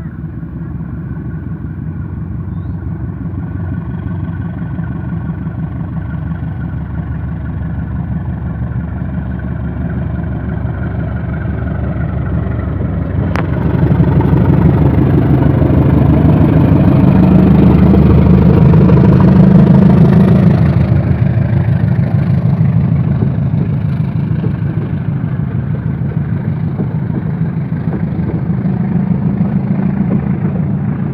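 GE CC203 diesel-electric locomotive's engine hauling a departing passenger train, a steady pitched drone that grows louder as it approaches and is loudest as the locomotive passes, about two-thirds of the way through. After that it eases off a little as the coaches roll by. There is a single sharp click about 13 seconds in.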